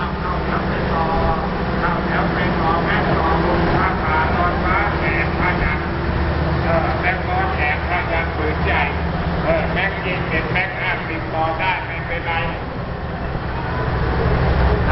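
People talking nearby, in voices the recogniser did not write down, over a steady low rumble.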